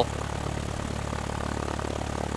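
Stinson 108's engine and propeller running steadily at low power with an even, unchanging hum, the plane held short of its takeoff run.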